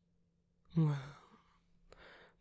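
A man's voice saying a drawn-out 'Well,' that falls in pitch, after a moment of near silence.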